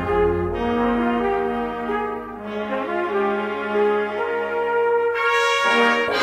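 Band playing a slow Andalusian Holy Week processional march, with brass holding sustained chords under a legato melody. No drums are heard in this passage.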